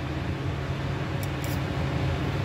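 Steady low mechanical hum, with a couple of faint clicks past the middle as a glass mason jar and its metal lid are handled.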